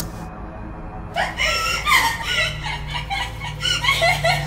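High-pitched laughter in short rising-and-falling peals, starting about a second in, over a low droning horror-style music bed.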